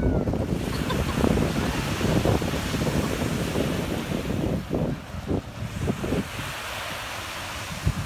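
Surf washing onto a beach, with wind buffeting the microphone in gusts; a short knock comes just before the end.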